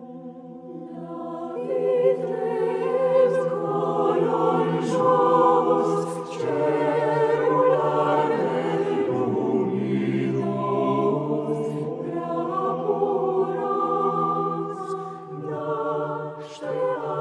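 Mixed choir of men's and women's voices singing a Romanian Christmas carol (colindă) unaccompanied, in sustained chords. The sound swells louder about two seconds in.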